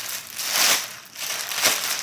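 Thin clear plastic bag crinkling as hands pull it open and bunch it up, in several crackly bursts, loudest about two-thirds of a second in and again near the end.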